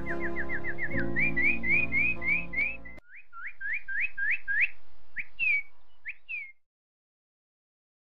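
Soft background music with a bird's quick, repeated chirps over it. The music stops about three seconds in, and the chirps go on alone, short rising notes, until they cut off suddenly about six and a half seconds in.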